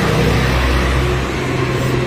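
A motor vehicle engine idling, a steady low hum with road traffic noise around it.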